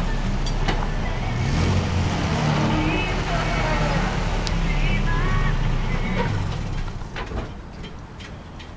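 Road vehicles driving past on a street: the low rumble of a pickup truck's engine and tyres, then a minivan going by. The traffic sound fades out near the end.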